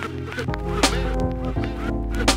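Instrumental 1990s hip hop beat with drums and a deep bass line that comes in about half a second in. Short, repeated gliding sampled sounds run over the beat.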